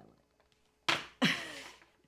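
A woman's short, breathy laugh about a second in: a sharp outbreath followed by a voiced sound falling in pitch and fading.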